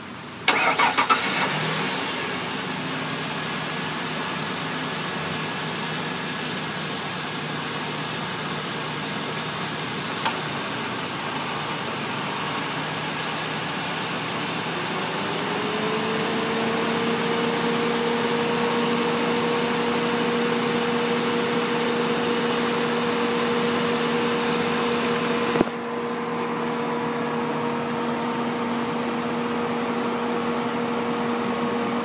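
1999 Ford Windstar's 3.8-litre V6 starting about half a second in, with a short loud flare, then idling steadily. About halfway through, a steady whine rises and settles over the idle. A sharp click comes near the end.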